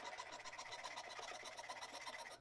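Jeweler's saw blade cutting thin copper sheet: faint, rapid, even scratchy strokes over a low steady hum.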